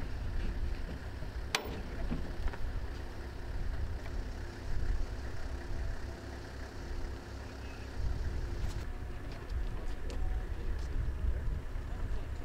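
An engine running steadily: a low rumble with a steady hum over it, and one sharp click about a second and a half in.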